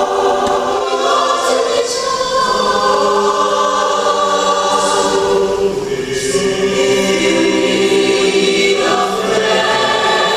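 Large mixed choir of school students singing, holding long chords that change every few seconds.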